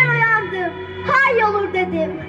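A girl's voice reciting into a microphone, drawn out in long gliding vowels, over steady low backing music.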